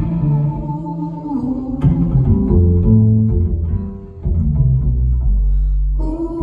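Double bass playing a line of separate low notes, ending on a long held low note.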